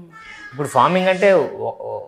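A man's voice in one drawn-out exclamation, about a second long, that rises and then falls in pitch.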